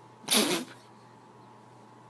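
A cat letting out one short, harsh noisy burst about a quarter of a second in, lasting about half a second.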